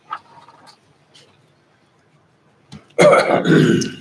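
A person coughs once, a loud, rough cough lasting about a second, starting about three seconds in after a quiet pause with only faint room sounds.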